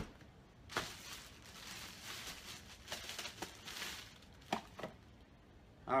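Plastic packaging and cardboard boxes being handled: a sharp knock at the start, then a few seconds of crinkling rustle, and a couple of light taps near the end.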